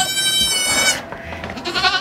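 A goat bleating: one long, high-pitched, steady bleat lasting about a second, with another call starting just before the end.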